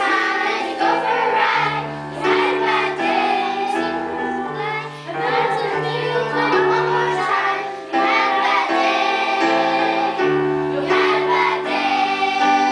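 A children's choir singing a song in unison, accompanied by an electric keyboard playing held chords and a bass line.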